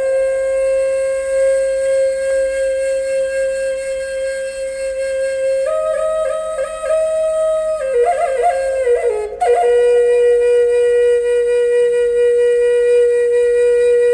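A flute melody of long held notes: one step up about six seconds in, a short run of quick ornamented notes around eight to nine seconds, a brief break, then another long held note.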